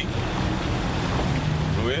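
Wind blowing across the microphone: a steady, loud rush of noise with a heavy low rumble.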